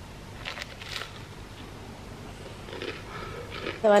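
Quiet room with a few faint short clicks about half a second and one second in, and soft rustling later on.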